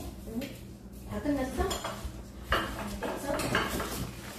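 Tableware clinking on a dining table during a meal: plates, bowls and utensils knocked and set down, with a few sharp clinks, the loudest about two and a half seconds in.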